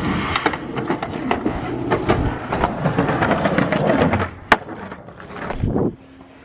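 Skateboard wheels rolling over a concrete sidewalk, a steady rumble with frequent sharp clicks, fading after about four seconds, with one sharp click about half a second later.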